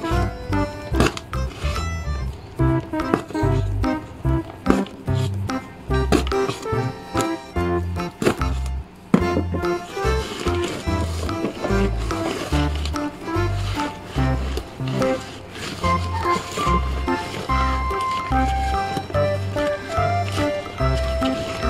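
Background music with a steady bass beat and a melody line.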